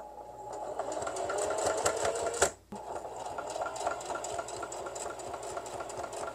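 Singer electric sewing machine running a straight stitch, its motor humming under quick, even needle ticks. It stops briefly about two and a half seconds in, then starts again.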